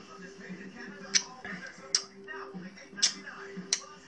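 Four sharp lip smacks about a second apart as a mouthful of beer is tasted, over a faint steady hum.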